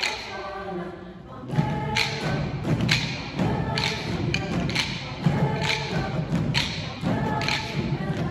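A mixed choir singing, with sharp percussive hits keeping a beat about twice a second; the singing and hits grow louder about a second and a half in.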